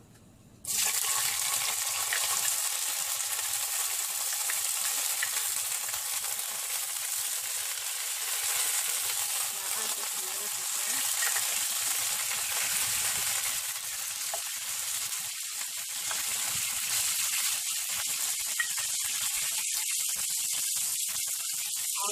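Chopped onions and tomatoes hitting hot cooking oil in a frying pan, starting to sizzle suddenly about a second in. The steady sizzle carries on as they fry, with light crackling in the second half.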